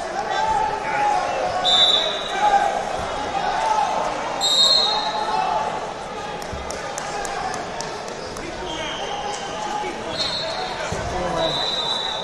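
Many voices talking at once in a large reverberant hall, with several short, shrill referee whistle blasts from around the mats at different moments. A few sharp claps come in the middle.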